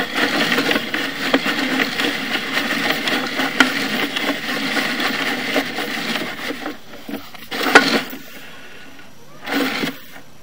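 Sewer inspection camera's push cable being fed quickly down the line, the reel and cable rattling and clicking steadily. The rattle eases after about six and a half seconds, with a sharp knock near eight seconds and a short burst near the end.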